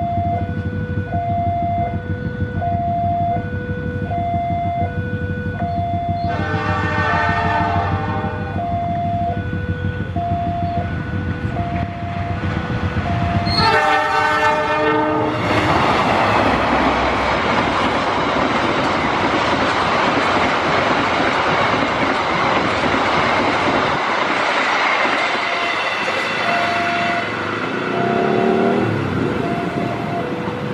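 A level-crossing warning bell rings in a steady two-tone chime, about once a second, as a KAI CC 206 diesel-electric locomotive approaches and blows its horn twice, each blast about two seconds long. The train then rushes past at speed with loud wheel and engine noise that drowns out the bell, and the bell is heard again near the end.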